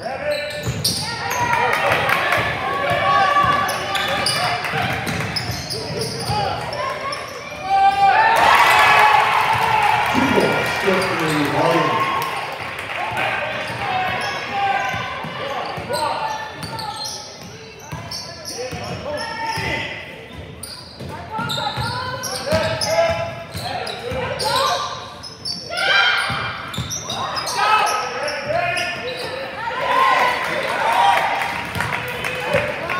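Basketball bouncing on a hardwood gym floor during play, with players' and spectators' shouts echoing in a large gym. The voices surge loudest about eight seconds in.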